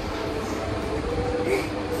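Steady low background rumble with a faint constant hum, no distinct event.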